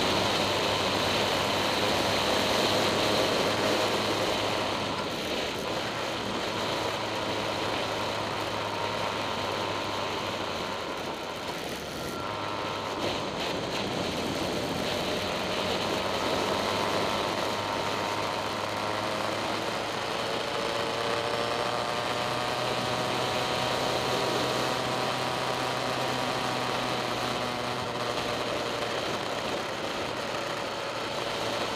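Road vehicle's engine running at road speed under a steady wash of tyre and wind noise. The engine note dips about twelve seconds in, then climbs and wavers as the vehicle takes the bends.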